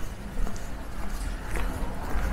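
Footsteps on a wet paved street, a few soft steps over a steady low outdoor rumble.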